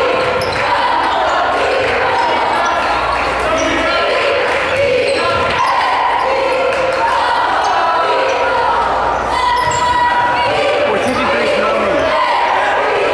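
Basketball game noise in a gymnasium: spectators' voices and shouts mixed together and echoing, with a basketball bouncing on the hardwood court.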